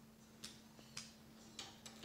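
Faint, sharp metal clicks, four in two seconds, from a double-bit lock decoder stick being handled while its pin tension is set.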